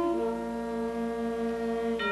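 High school concert band holding long sustained notes, with a low, horn-like tone; about a quarter second in the chord moves to a new pair of held notes.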